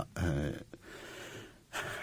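A man's drawn-out hesitant "eh", then a soft audible in-breath as he pauses mid-sentence.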